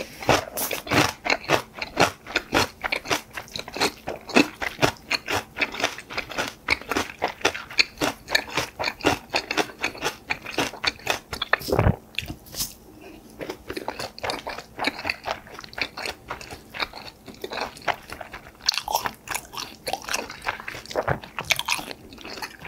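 A person chewing a mouthful of food close to the microphone, with wet chewing clicks several times a second. There is one louder knock about twelve seconds in, then a quieter stretch before the chewing picks up again near the end.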